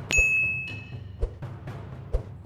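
A click followed at once by a bright bell ding that rings out and fades over about a second: the notification-bell chime of a subscribe-button animation.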